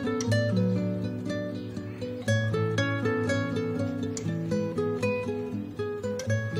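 Background score: a plucked acoustic guitar playing a gentle melody of short notes over a steady low accompaniment.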